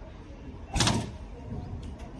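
A van's sliding side door slammed shut once, a short loud bang just under a second in.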